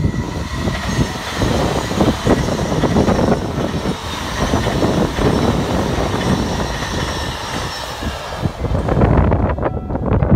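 JR West 283 series electric limited express train passing close by at speed, its wheels clattering over the rails.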